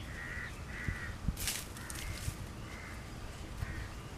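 A crow cawing in short calls, about one a second, over a low steady rumble, with a brief rustling hiss about one and a half seconds in.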